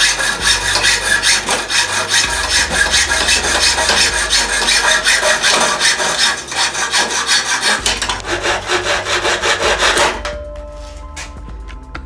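Hacksaw cutting flat steel bar stock clamped in a bench vise: a steady run of rapid back-and-forth rasping strokes that stops about two seconds before the end, leaving background music.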